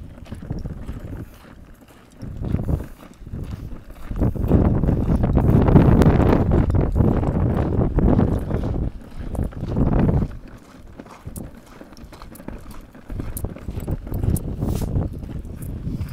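Footsteps on a concrete path, with a louder stretch of low rumbling noise on the phone's microphone from about four to ten seconds in.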